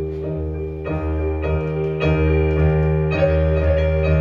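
Electric keyboard played on piano sound, holding full chords over a low bass note, with a new chord struck about once a second.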